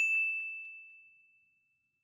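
A single high bell-like ding, struck once and ringing away over about a second: a sound effect that goes with the channel logo appearing in the intro.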